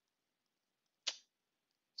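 Near silence with a single short computer-mouse click about a second in.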